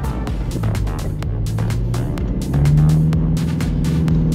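Background electronic music with a steady beat over the Toyota Hilux Rogue's 2.8-litre four-cylinder turbodiesel, driving in four-wheel-drive high range through soft beach sand. About two and a half seconds in, the engine note rises and gets louder as the truck struggles in the sand.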